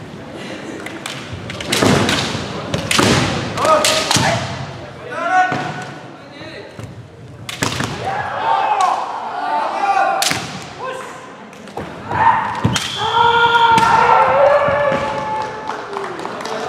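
Kendo bout: sharp cracks and thuds of bamboo shinai strikes and stamping feet on the hall floor, mixed with the fighters' loud kiai shouts. Near the end the shouting is drawn out into long held yells.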